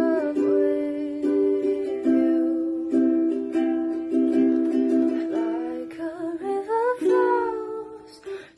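A ukulele strummed in slow, even chords, about one a second, with a woman singing along to it; her voice slides up in pitch near the end.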